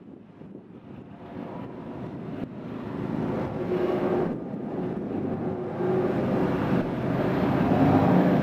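A steady rumbling noise that grows gradually louder.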